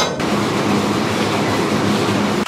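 Treadmill running close up: a steady motor hum with rolling belt noise.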